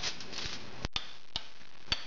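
A spoon knocking against a glass bowl and the foil-lined baking pan as marinated chicken is scraped out: about four short, sharp knocks over a steady hiss.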